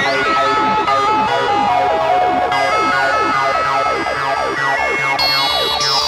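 Trance track with synthesizers playing many quick, repeated falling pitch sweeps that sound like a siren, over a stepping held synth melody. Loud and continuous.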